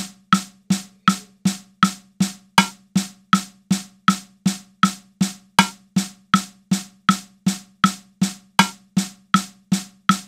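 Playback of a drum example: one drum struck in steady eighth notes at 80 BPM, about 2.7 even hits a second, with a metronome clicking only on each beat.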